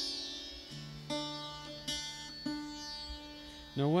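Mohan veena, a slide guitar with sympathetic strings, played as a few single plucked notes about half a second to a second apart. Each note rings on, and the lower sympathetic strings, tuned to the song's scale, sound along with them by themselves.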